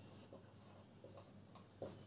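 Marker writing on a whiteboard in short, faint strokes, with one slightly louder stroke near the end.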